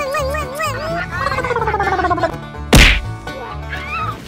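Cartoon-style comedy sound effects over background music: a wavering whistle-like tone, then a falling slide, then a single loud whack about three-quarters of the way through.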